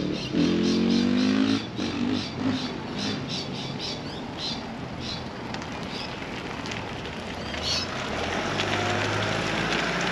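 A vehicle engine revving up with a rising pitch for about a second, then road traffic: an SUV approaching, its engine-and-tyre rumble growing near the end. Birds chirp in between.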